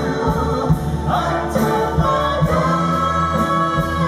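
A man and a woman singing a duet through microphones over a symphony orchestra, holding long notes with a rising vocal glide about a second in.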